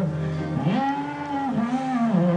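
Male gospel soloist singing through a microphone, holding a low note and then sliding up to a higher sustained note about half a second in.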